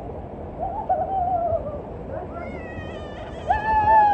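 A person whooping on a water-slide ride: long drawn-out calls that fall in pitch, the loudest and longest one near the end.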